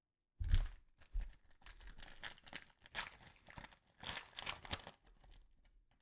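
Metallised foil trading-card pack wrapper being torn open and crinkled by hand: a knock about half a second in, then a busy run of crackling and tearing that thins out near the end.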